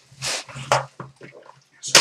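Cardboard box and its packaging handled while a sealed trading-card hobby box is opened: a few short rustles and scrapes in the first second, then quieter.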